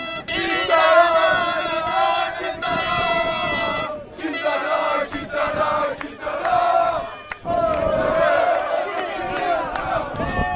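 A crowd of fans chanting together in loud unison, holding long shouted notes, with brief breaks between phrases about four and seven seconds in.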